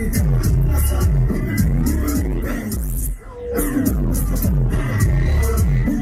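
Loud live concert music through the stage sound system: a heavy-bass electronic beat with a steady pattern of sharp high ticks, dropping out briefly about three seconds in before coming back.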